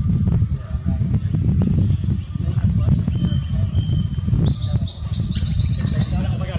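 A steady low rumble throughout, with several short, thin, high bird notes in the second half.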